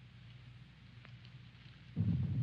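Faint steady low hum and hiss of an old film soundtrack, with a couple of faint ticks about a second in.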